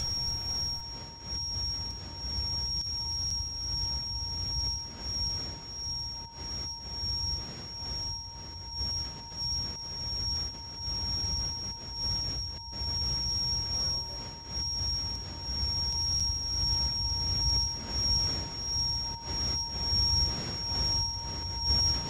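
A low, wavering rumble with two steady whining tones held over it, one high and one fainter mid-pitched, making a sustained electronic drone.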